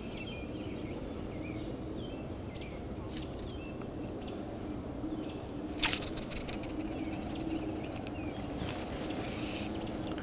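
Lakeside outdoor ambience: a steady low background rumble with birds calling in short, repeated chirps about once a second, and one sharp click about six seconds in.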